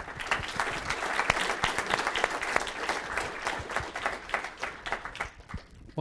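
Audience applauding, a dense patter of many hands clapping that thins out and dies away near the end.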